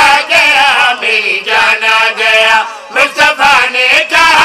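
Male voices chanting a devotional qasida into a microphone, in melodic phrases with brief breaks between them.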